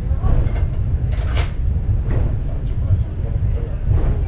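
Inside a Takao Tozan Railway funicular car on the move: a steady low rumble of the car running up its rails, with a sharp clack about a second and a half in.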